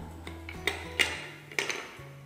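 Wooden spindles clicking against one another and against the wooden spindle box as they are set into a compartment: three sharp clicks, with steady background music under them.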